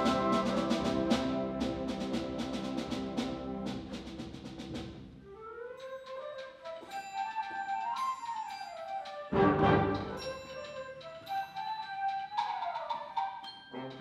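A high school concert band playing a march: the full band with steady percussion strokes for the first few seconds, dying away, then a lighter, quieter melodic passage broken by one loud accent about two thirds of the way through.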